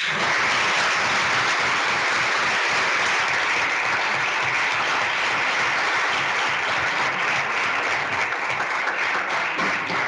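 Audience applauding: dense, steady clapping that starts abruptly and eases slightly near the end.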